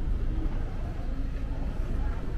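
Steady low rumble of outdoor ambience, with no distinct events.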